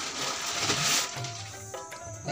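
Background music with a steady low beat, with a rushing noise over the first second or so.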